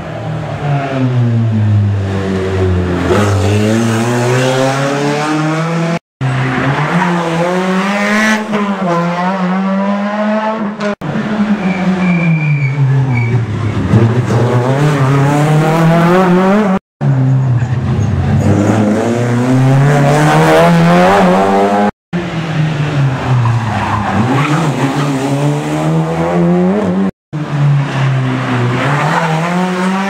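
Rally car engines at racing pace through a junction: each time the engine note drops as the car brakes and downshifts, then climbs again as it accelerates away hard. This repeats over several short clips, broken by brief silent gaps at the cuts.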